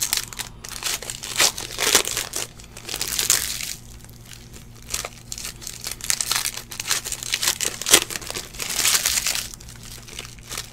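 Foil trading-card pack wrapper crinkling in the hands as a pack is torn open, in irregular crackly bursts.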